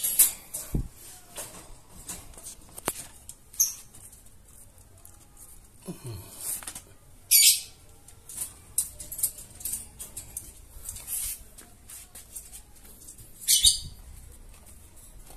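Rabbits being handled in and out of a wooden shipping crate and a wire cage: irregular rustling, scratching and knocking of claws, hay, wood and wire. There are short loud scuffles about seven seconds in and again near the end.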